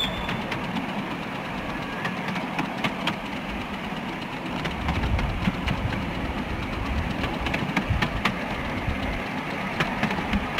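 Miniature live-steam train on 10¼-inch gauge track, heard from the passenger carriages: a steady running rumble of the train with sharp wheel clicks now and then.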